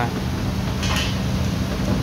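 Two-bottle water-bottle washing machine running: a steady motor hum with water spraying inside the stainless-steel cabinet as brushes roll over the bottles inside and out. A brief high-pitched clink about a second in.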